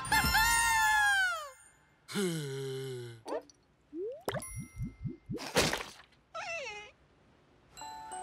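Cartoon sound effects in quick succession: a long falling-pitch tone, a lower tone that drops and then holds, a sharp hit about four seconds in, a string of quick rising boings and a short whoosh, then another falling tone. Music starts at the very end.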